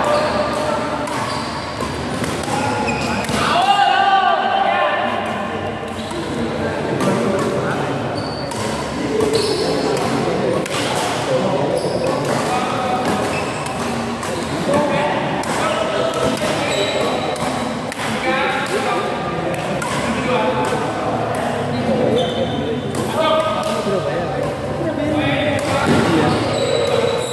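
Badminton rackets hitting a shuttlecock again and again during a doubles rally, heard as scattered sharp hits, over almost continuous talking from people in the hall.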